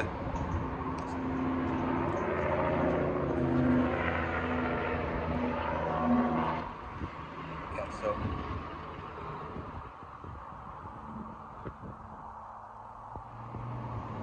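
A motor vehicle engine running close by, a low steady hum that cuts off suddenly about seven seconds in, leaving fainter traffic noise.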